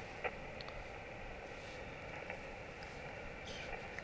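Faint, steady hiss of open-band static from an HF transceiver's speaker, tuned to an empty frequency on 7.190 MHz (the 40-metre band) with the volume up. A light click sounds about a quarter second in.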